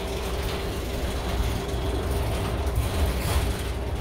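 Cabin noise inside a moving city transit bus: a steady low engine and road rumble with a steady whine, and light clicking and rattling of the bus's fittings.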